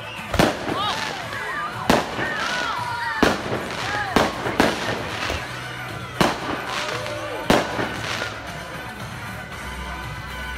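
Fireworks going off: about seven sharp bangs at uneven intervals.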